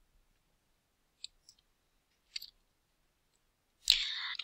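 A few faint, sharp clicks in an otherwise quiet room: one about a second in, a lighter one just after, and a short cluster a little past the halfway point.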